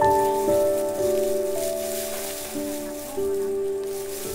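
Background music of sustained chords, the notes held and changing pitch every second or so.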